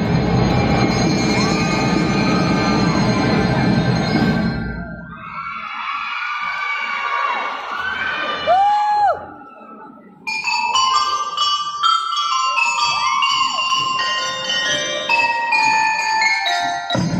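A drum and lyre band playing: a full, dense passage, then a sparser stretch that drops away briefly about ten seconds in, after which bell lyres (glockenspiel-type metallophones) take up a bright melody of quick stepped notes.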